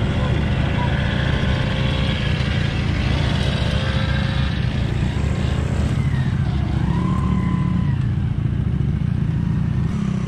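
Dirt bike engine running steadily under a rider, a dense low rumble with no breaks.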